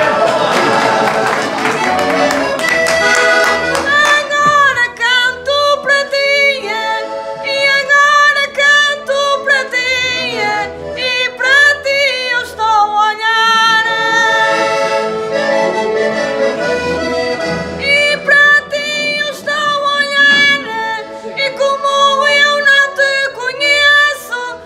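A concertina, the Portuguese diatonic button accordion, plays a rhythmic folk accompaniment of held chords over a regular bass beat. A woman's voice sings over it at times.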